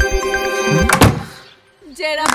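Background music with a beat, cut off about a second in by a wooden door being slammed shut; the slam is the loudest sound and dies away quickly.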